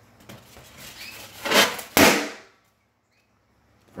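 A pink balloon bursting with one sharp bang about two seconds in, just after a loud noisy burst.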